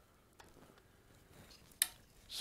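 Quiet handling of a jointed metal camera arm (Manfrotto double articulated arm) being picked up: a few faint knocks, then one short, sharp click near the end.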